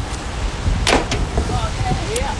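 Street traffic on a wet city road, a steady low rumble, with a sharp click about a second in.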